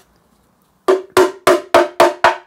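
Small hammer tapping the old rusted pressed-steel oil sump from a K11 Nissan Micra: a quick run of ringing metallic strikes, about three a second, starting about a second in. The taps test how far rust has eaten the pan, which has corroded enough for oil to seep through.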